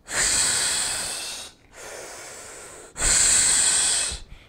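A man breathing deeply in demonstration of chest-only breathing, working the intercostal muscles with the diaphragm held still. A long loud breath fades over about a second and a half, then comes a quieter breath, then another loud one from about three seconds in.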